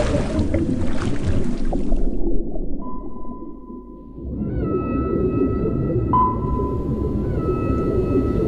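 Underwater submarine sound design. Bubbling hiss for about two seconds, then a low rumble under long, steady electronic tones near 1 kHz and higher, the kind of sonar signal that a submarine's sonar operator hears in his headphones while searching for a target.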